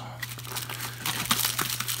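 Plastic packaging being handled: a small accessory bag crinkling, with irregular small crackles throughout.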